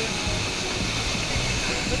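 Waterfall pouring into its plunge pool: a steady rushing of falling water.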